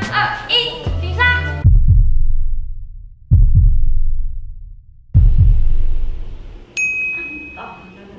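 Three deep booming hits about a second and a half apart, a dramatic countdown sound effect, each dying away slowly, followed near the end by a single high ding.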